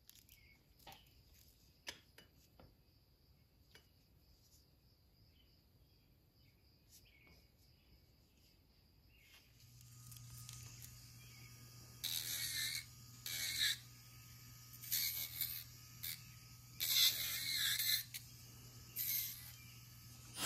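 Faint light taps at first. About halfway through, an electric nail drill (e-file) starts with a steady hum. From about two seconds later its bit grinds against the acrylic nails in a series of short, louder bursts as they are filed.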